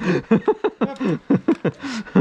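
Laughter: a man's voice laughing in quick, repeated bursts.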